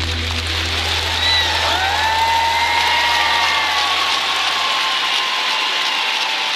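Arena audience applauding, with a deep bass drone from the music fading out about five seconds in. A few high gliding, whistle-like tones sound over the applause in the first half.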